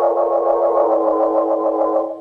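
Organ music bridge between scenes of a radio drama: a loud held chord with a fast, even tremolo, ending at the close.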